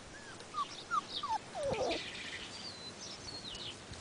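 A run of four or five short, falling squeaky calls in the first two seconds, the last one lower and longer. Fainter, high wavering bird chirps follow in the second half.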